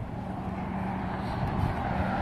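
Cars approaching on a multi-lane road, their tyre and engine noise growing steadily louder.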